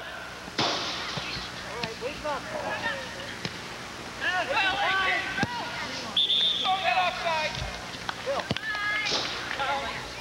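Shouting voices of soccer players and spectators calling out during play, in short scattered calls, with a few sharp knocks and a short high steady tone about six seconds in.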